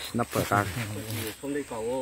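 People talking, several short phrases one after another; near the end one phrase rises and falls in pitch.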